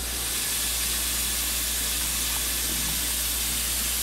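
A steady, even hiss that starts suddenly and holds at one level throughout.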